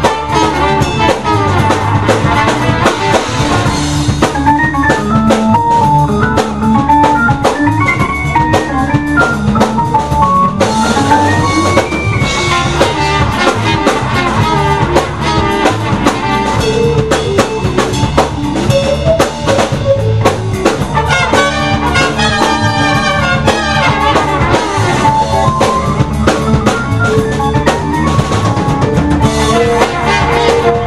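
Live band music with the drum kit to the fore, bass drum and snare strokes over an electric bass line.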